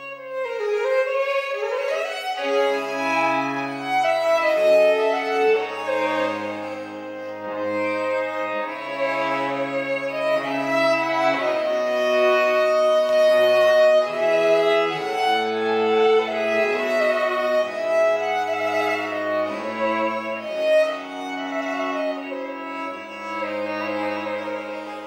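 Baroque trio sonata played live by two violins with cello and harpsichord continuo: the violins play busy melodic lines over cello bass notes that change every second or two. The violins open with a fast sweeping run.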